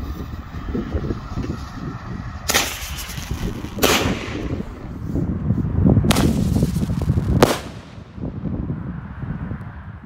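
Airbomb single-shot fireworks going off: four sharp bangs, in two pairs about a second and a half apart, over a low rumble.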